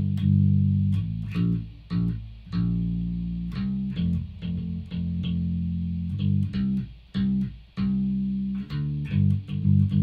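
Solo electric bass guitar playing a slow progression of single notes, plucked and held with short breaks between them, with a few slides between frets.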